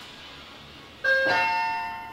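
Elevator arrival chime: a two-note electronic ding-dong about a second in, its bell-like tones fading away slowly.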